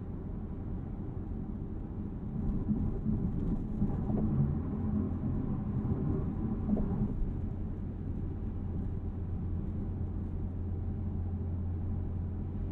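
Cabin noise of a 2023 BMW Z4 M40i roadster coasting at highway speed in Eco Pro with its fabric soft top up. A steady low rumble of mellow tyre and road noise, mixed with wind noise from the fabric roof. The engine is kept quiet.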